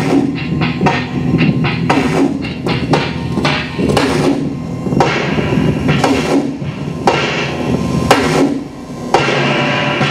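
Live experimental noise music: a dense run of irregular, sharp, hammer-like hits and clatter over a steady low drone. It drops back briefly near the end, then comes back loud.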